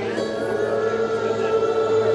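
Live music from an arena stage: acoustic guitar with many voices singing along, holding one long steady note.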